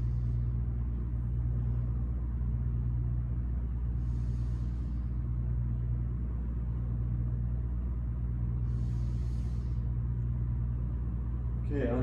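Steady low rumble of building ventilation, with two slow, deep breaths over it, about four seconds in and about nine seconds in.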